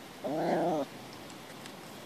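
A small dog makes one short, pitched vocal sound, a low whine-like call about half a second long, starting a quarter second in.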